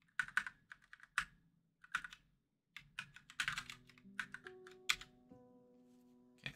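Typing on a split computer keyboard: scattered keystrokes at first, then a quicker run of keys about three seconds in. Faint background music with held notes comes in about halfway through.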